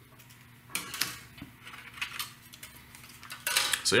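Hard plastic and metal parts being handled: a few light clicks and knocks as the plastic reflector is pulled out of an LED floodlight's aluminum housing, with a louder clatter near the end.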